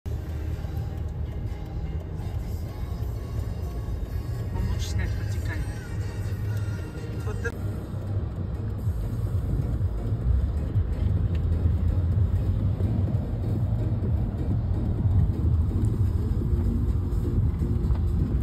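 Low, steady rumble of car and street traffic, with people's voices and a brief laugh about five seconds in.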